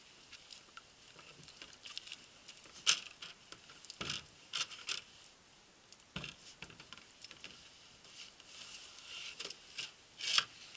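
Scattered knocks, scuffs and rustles as a canoe is hoisted up onto a portager's shoulders, with boots shifting on rocky ground. The sharpest knock comes about three seconds in, and a few more follow between four and five seconds.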